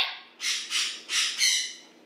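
A pet bird calling three times in quick succession, each call a noisy, high cry.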